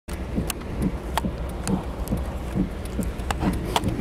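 Low, steady rumble of a vehicle engine idling, with soft regular ticks about twice a second and a few scattered sharp clicks from the phone being handled.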